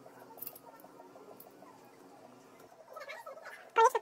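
Hands handling a cleaned aluminium CPU heatsink and its plastic retention frame: faint rubbing and light ticking, then a brief loud squeak just before the end.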